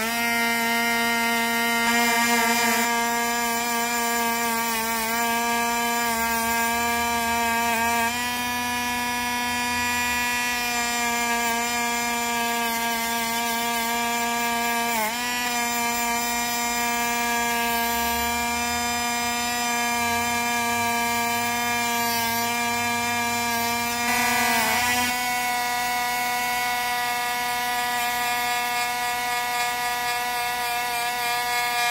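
Cordless rotary tool spinning a carbon steel wire wheel brush against a penny, scrubbing oxidation off the copper. Its motor gives a steady whine, with brief dips in pitch about halfway through and again near the end.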